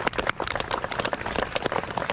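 A small group of people applauding, a dense, irregular patter of hand claps.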